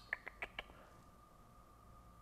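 A quick run of four light computer mouse clicks in the first half second or so, then quiet room tone with a faint steady hum.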